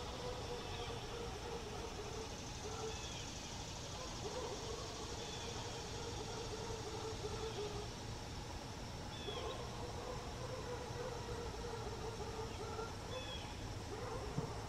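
Outdoor ambience: a steady low rumble like distant traffic under a faint high insect drone, with short high bird chirps every few seconds.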